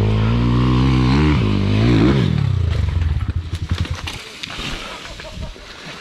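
Enduro dirt-bike engine revving, its pitch climbing and dropping a couple of times, then about two seconds in it falls to an uneven, spluttering low-rev run that fades away.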